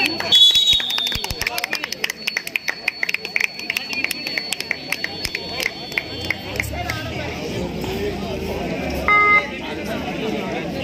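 A referee's whistle blows briefly as the raider is tackled, followed by a few seconds of quick, sharp claps over crowd chatter. Near the end a short, loud buzzer-like tone sounds.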